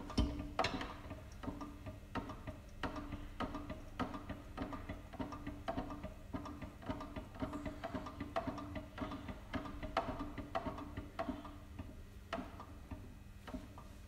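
Soft background music with a ticking, wood-block-like beat over a low repeating tone.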